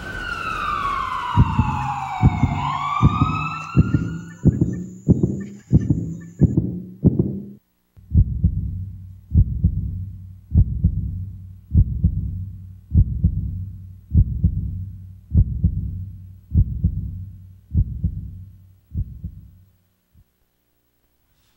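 Heartbeat sound effect: a run of deep, evenly spaced thuds, quicker at first, then after a brief break slowing to about one a second. Over the first few seconds a siren-like wailing tone falls and then rises.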